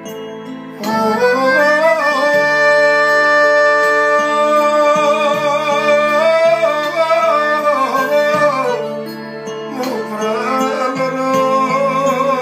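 A man singing long, wavering held notes over his own piano accordion, the voice coming in about a second in, easing off briefly near three-quarters through, then singing on.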